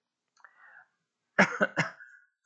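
A man coughing: three quick, loud coughs about a second and a half in, behind a hand held to his mouth.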